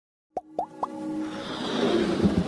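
Logo-intro sound effects: three quick upward-sliding plops about a quarter second apart, then a swelling whoosh as the intro music builds.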